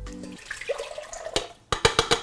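Chopped tomatoes and juice sloshing in a stainless steel bowl as hands stir them. Near the end come a few sharp metallic clinks as the bowl is tipped against a steel saucepan to pour.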